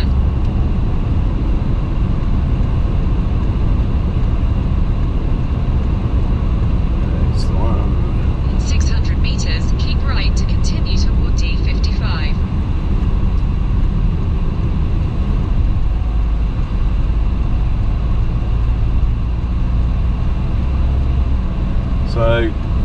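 Car cabin noise at motorway speed: a steady low rumble of tyres on the road and the engine.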